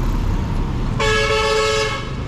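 A vehicle horn sounds once for about a second, about halfway through, with two close tones blended, over the rumble of passing road traffic.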